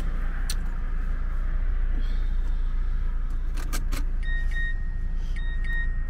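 Steady low rumble of a car heard from inside its cabin, with a few light clicks of handling. Near the end a short electronic chime sounds twice, about a second apart.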